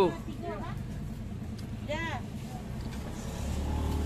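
Busy outdoor market background: a steady low engine hum that grows louder near the end, with a few short vocal sounds.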